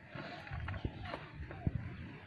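A goat feeding on leafy stems in a wooden pen: rustling of leaves, and two dull knocks on the pen about a second apart.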